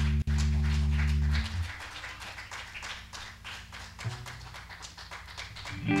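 A band's final held chord, with electric bass and guitar sustaining low, rings on with a brief dropout just after it starts, then cuts off about a second and a half in. After that there are scattered light clicks and taps in a small room.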